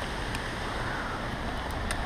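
Steady outdoor rushing noise with a low rumble, with a couple of faint clicks.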